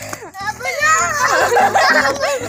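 Children's voices shouting and squealing at play, with background music with a steady beat underneath.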